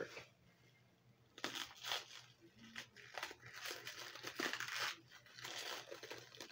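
Clear plastic wrapping on a bundle of fabric crinkling and being torn as it is handled and picked open, in irregular rustles that start about a second and a half in.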